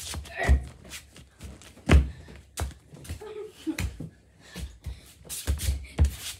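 Footsteps of children in socks thudding up carpeted stairs: a string of irregular dull thumps, the loudest about two seconds in.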